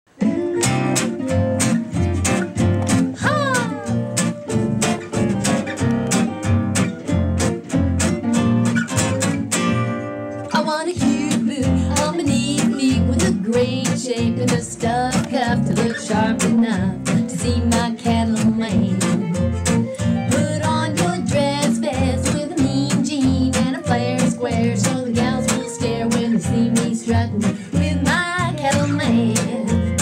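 Acoustic guitar strummed in a steady rhythm, as a song's opening, with one chord left ringing about ten seconds in before the strumming picks up again.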